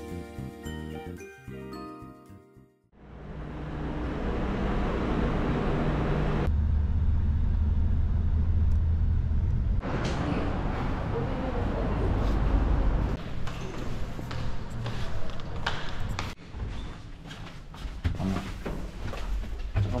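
Light chiming background music fades out about three seconds in. A steady low rumble of a moving vehicle follows for about ten seconds and is the loudest sound. Then come street sounds with scattered clicks and knocks.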